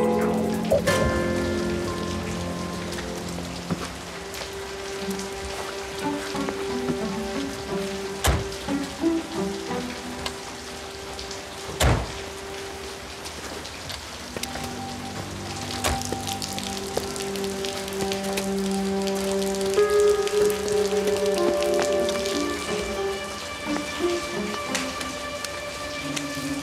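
Steady rain falling on wet pavement, under soft background music with long held notes. Two sharp knocks cut through, about eight and twelve seconds in, the second the louder.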